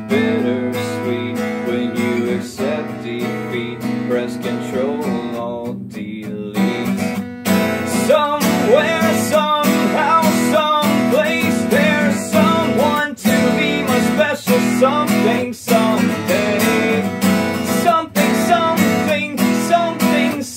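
Song music led by strummed acoustic guitar, with a melody line that bends in pitch over the chords. It dips briefly and then grows louder and fuller about seven seconds in.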